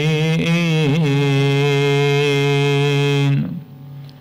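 A man's voice in melodic religious chanting, holding a long steady note with a short wavering turn about a second in, then breaking off about three and a half seconds in.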